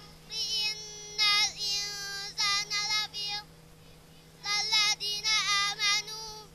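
Children and young women chanting a Quran recitation together into microphones in a melodic, sung style, in two phrases with a pause of about a second between them. A steady low hum runs underneath.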